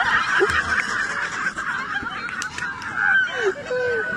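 A crowd laughing and crying out in high voices, many at once and overlapping throughout.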